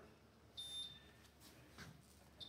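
Near silence with a single short, high-pitched electronic beep about half a second in.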